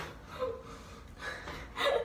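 A woman's breath sounds: a brief vocal sound about half a second in, then a loud breathy gasp near the end.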